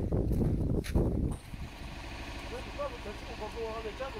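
Wind rumbling and bumping on a phone microphone outdoors, with a few knocks. It cuts off about a second and a half in, leaving a quieter steady hum with faint distant voices.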